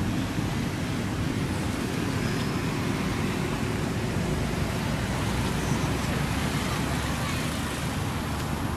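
Steady low rumbling noise without a clear rhythm or pitch.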